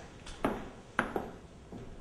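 Three sharp knocks, each with a brief ringing tail: one about half a second in, then two close together about a second in.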